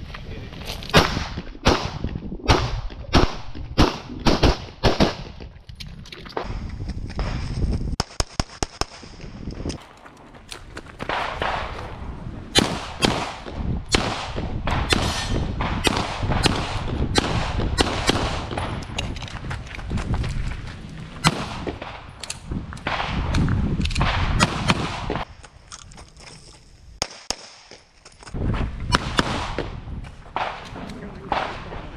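Pistol shots fired in quick strings during a timed practical-shooting stage, many sharp cracks in pairs and runs with short pauses between positions. A fast run of cracks comes about eight to nine seconds in, and there is a quieter lull near the end before a last few shots.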